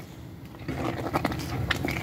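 A utensil stirring thick farina porridge simmering in a pot: soft, irregular scraping and small wet clicks, a little louder after the first half second.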